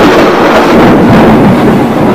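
Thunder sound effect: a loud, continuous rumbling roar that holds steady throughout.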